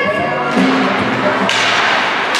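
Arena music playing. About a second and a half in, ice hockey sticks and skates start scraping and clacking on the ice as play starts from a faceoff.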